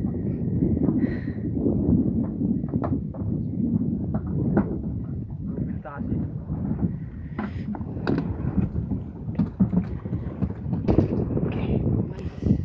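Wind rumbling on the microphone over open water, with scattered knocks and thuds from fishermen moving about and hauling handlines in a small wooden boat, and faint voices.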